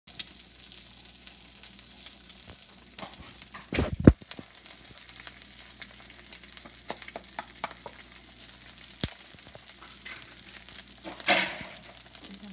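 Rice and an egg sizzling in a nonstick frying pan: a steady frying hiss with scattered small clicks. A loud knock comes just before four seconds in, and a brief louder burst comes near the end.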